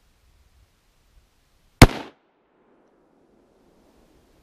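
A single shot from a Karabiner 98k bolt-action rifle in 8x57mm Mauser, a little under two seconds in, followed by a rolling echo that fades over about two seconds.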